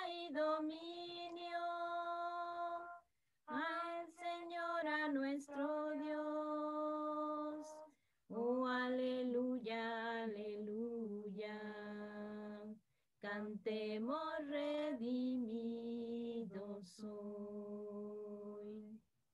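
A woman sings the chorus of a Spanish worship song unaccompanied, in four phrases of long held notes with short breaks between them.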